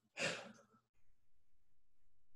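A person sighing once, a short breath out lasting about half a second, just after the start. Then only a faint steady low hum.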